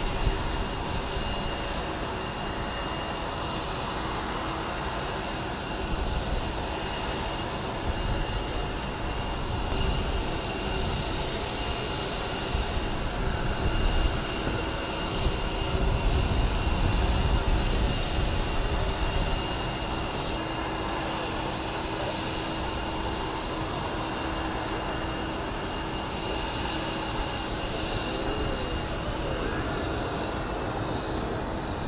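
Steady jet whine from the parked Air Force One, a Boeing 747 (VC-25A), several high tones held level over a constant rush. A low rumble swells a little around the middle.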